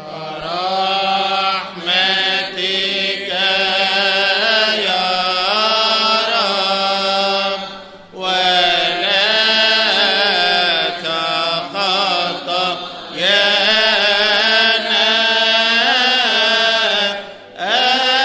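Coptic Orthodox liturgical chant: a voice singing a drawn-out, melismatic melody in long phrases, with short breaks, the longest about eight seconds in and again near the end.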